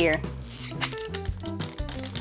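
Foil booster-pack wrapper crinkling in the hands, in short bursts, over background music with steady held notes.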